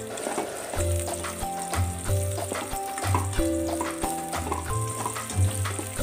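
Background music over garlic, onion and red chili strips sizzling in oil in a metal pot, with the light clicks of a wooden spoon stirring against the pot.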